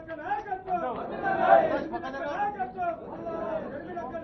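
Several people talking at once: indistinct overlapping chatter, briefly louder about a second and a half in.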